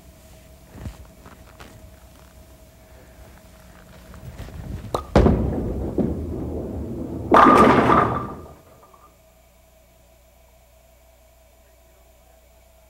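Bowling ball landing on the wooden lane with a thud about five seconds in, then rolling with a low rumble for about two seconds. It crashes into the pins with a loud clatter and ringing that dies away within about a second.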